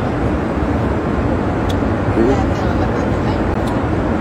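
Steady low drone of a private jet's cabin noise, the engines and rushing air heard from inside the cabin.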